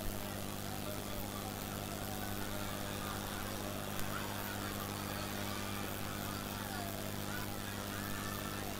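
A steady low electrical hum with faint, indistinct voices beneath it; no loud sounds.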